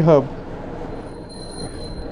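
A man's last word ends, then a steady background hiss with a faint thin high-pitched whine that comes and goes.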